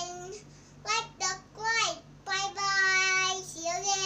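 A young girl singing in a high voice, short gliding phrases between long held notes.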